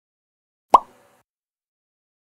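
A single short pop sound effect, a quick upward blip in pitch like a phone notification sound, about three-quarters of a second in.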